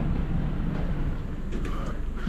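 Steady low rumble of background noise with faint distant voices.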